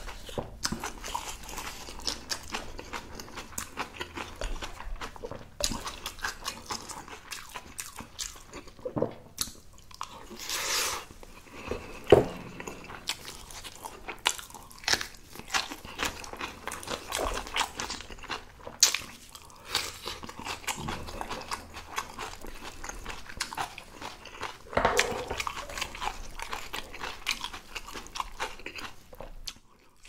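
Close-up chewing and crunching of spicy napa cabbage kimchi and rice, with a run of wet mouth clicks and short crunches. A wooden spoon scrapes and clacks against the rice bowl now and then.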